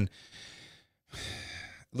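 A man breathing between sentences: a faint breath as his speech stops, then a louder intake of breath about a second in, just before he speaks again.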